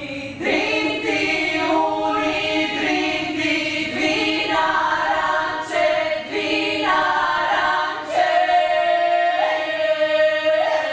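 Women's vocal ensemble singing a cappella in several-part harmony, phrase after phrase with short breaths between. From about eight seconds in, the voices hold a long chord.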